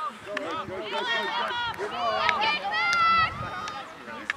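Several high-pitched voices shouting and calling out over one another during field hockey play, with one long held call near the end. A few sharp clacks of field hockey sticks on the ball cut through the shouting.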